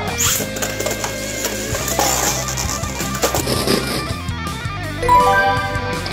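Rock background music with electric guitar, over light clicking and clinking from Beyblade tops spinning and colliding in a plastic stadium. There is a short bright burst just after the start, and a run of stepped tones near the end.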